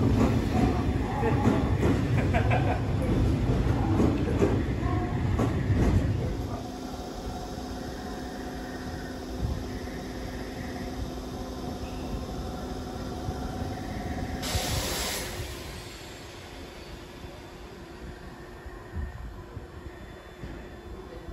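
Electric train on the Nankai line rumbling along the platform, loud for about the first six seconds and then dropping away to a quieter steady hum. A short burst of hiss comes about three-quarters of the way in.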